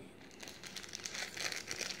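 Faint crinkling of a small plastic sachet as it is shaken and squeezed to tip water beads out of it, a rapid run of small crackles.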